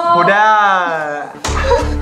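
A person's long, drawn-out exclamation of delight, its pitch rising and then falling. About one and a half seconds in, background music with a heavy bass beat starts.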